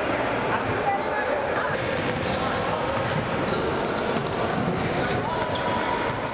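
Echoing gym noise during wheelchair basketball play: a basketball bouncing on the hardwood court among indistinct overlapping voices, with a few brief high squeaks.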